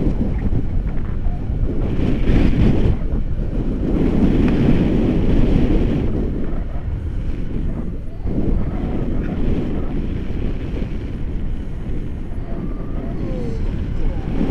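Wind buffeting an action camera's microphone in flight on a tandem paraglider: a low, gusting rush that swells and eases, with a brief lull about eight seconds in.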